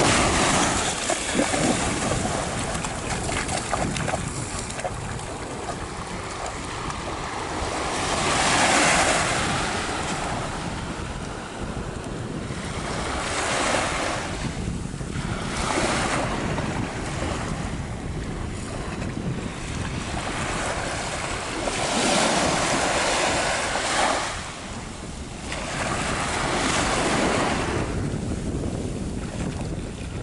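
Small sea waves breaking and washing onto a sandy shore, the surf swelling and fading every few seconds, with wind buffeting the microphone.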